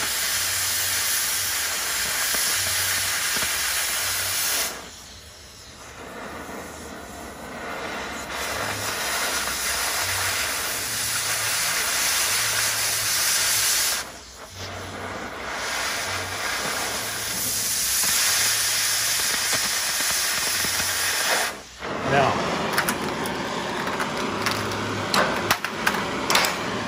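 Oxy-acetylene cutting torch hissing steadily as its flame and oxygen jet cut through steel plate, throwing sparks. The hiss drops away briefly three times, about five, fourteen and twenty-two seconds in. A few sharp knocks come near the end.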